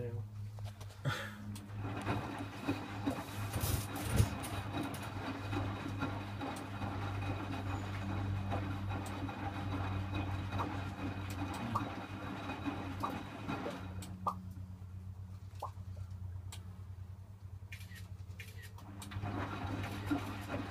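Zanussi EW800 front-loading washing machine in its wash phase: the drum tumbles a load of darks in sudsy water, with a steady motor hum, sloshing and soft clunks of the laundry. About 14 seconds in the tumbling stops and only the hum remains for several seconds. Near the end the drum starts turning again, the other way.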